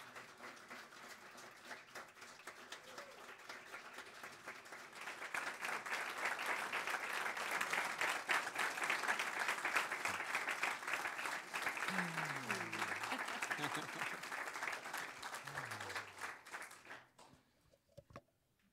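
Congregation applauding, the clapping building to its fullest in the middle and dying away near the end.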